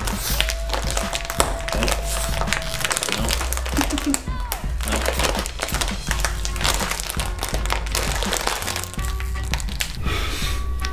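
Background music with a steady bass beat, over the crinkling and tearing of a plastic snack packet being pulled open.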